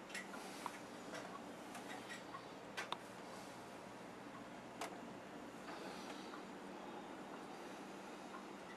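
Faint, steady low hum of an open refrigerator, with a few light clicks scattered through it, loudest a quick pair about three seconds in and one near five seconds.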